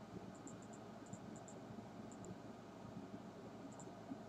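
Faint steady hiss of room tone, with scattered tiny high ticks.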